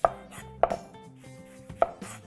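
Chef's knife slicing the caps off an orange and striking the cutting board three times: at the start, just over half a second in, and near the end.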